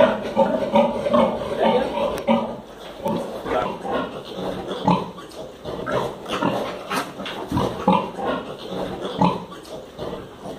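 A sow and her suckling piglets vocalising: a dense run of short pig grunts, several a second, louder in the first couple of seconds.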